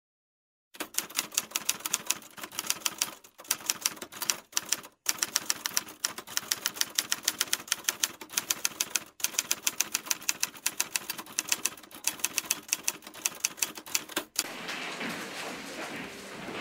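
Typewriter keys clattering in rapid runs with short pauses, a typing sound effect. About two seconds before the end the clatter stops and a steady room background follows.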